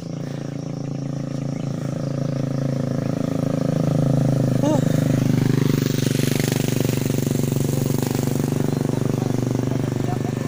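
A motor vehicle's engine running with a steady low pulsing note, growing louder over the first four seconds as it approaches, then staying loud.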